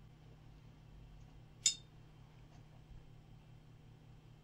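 Faint room tone with a single short, light clink about one and a half seconds in: a paintbrush tapped against hard painting gear as it goes between the palette and the paper.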